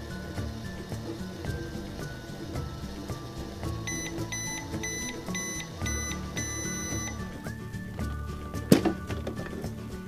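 A toy microwave's electronic beeper sounds about six short beeps and then one longer beep as its cooking cycle ends, over background music. Near the end comes one sharp plastic click as the door is opened.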